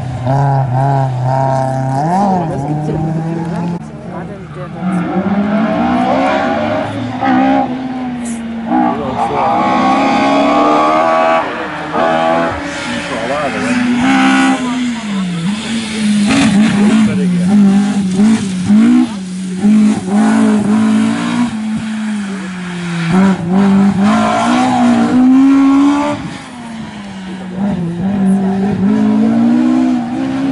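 Classic rally car engines revving hard, the pitch climbing and dropping repeatedly as the cars accelerate, lift and change gear through the bends of the stage.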